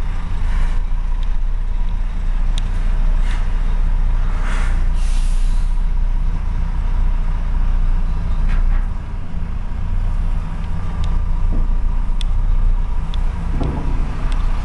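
Truck diesel engine running at low speed, heard from inside the cab as the truck creeps forward, with a few short air-brake hisses, the longest about five seconds in.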